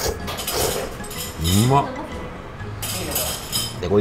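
A man slurping hand-made ramen noodles off a soup spoon in a few noisy sucking bursts, with chopsticks and the spoon clinking against the bowl. A short murmured 'uma' comes about halfway through.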